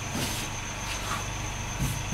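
Ankara cotton print fabric rustling softly a few times as hands fold and smooth it on a table, over a steady background hum with a thin high whine.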